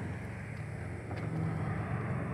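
Low, steady hum of a motor vehicle, growing slightly louder.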